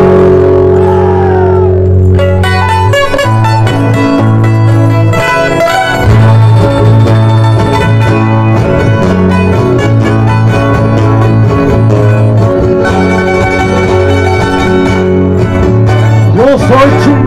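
A string band of guitars and other plucked strings playing a lively folk tune over steady bass notes. A held chord opens it, and quick plucked notes start about two and a half seconds in.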